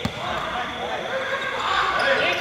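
A basketball bouncing once on a hard court near the start, with players' voices calling out around it.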